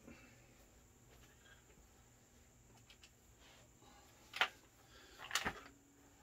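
Near silence with faint room tone, broken by a sharp knock about four and a half seconds in and a few weaker knocks about a second later.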